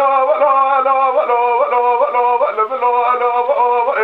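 Unaccompanied Kurdish dengbêj male voice holding long, ornamented sung notes with a quick vibrato. The melody steps downward from about a second in and ends in rapid turns. It is heard through the narrow, dull band of an old archive recording.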